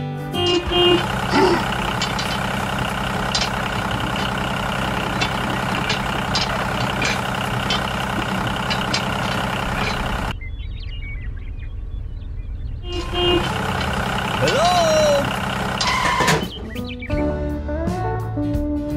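A steady motor drone mixed with background music, its upper part dropping out for about three seconds in the middle, with a few short voice-like glides.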